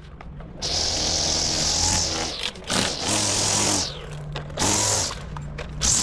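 String trimmer revved in repeated bursts while cutting grass, its line hissing through the blades, with short easings of throttle between bursts.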